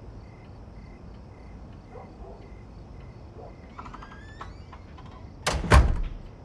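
Faint cricket chirping, a high pulse about three times a second, over quiet room tone. About four seconds in there is a short faint creak. Near the end comes a loud, sudden double thump.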